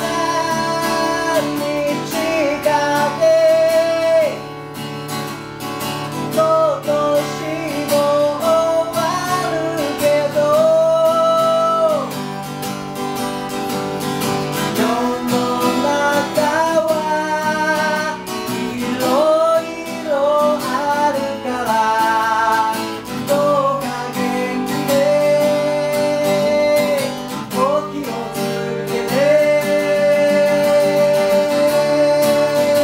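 Acoustic guitar strummed while men sing the melody, with long held notes.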